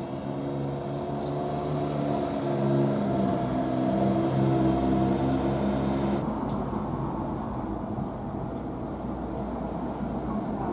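A motor vehicle's engine running low and slow in the street, growing louder toward the middle. About six seconds in the sound cuts to a steadier, noisier street ambience.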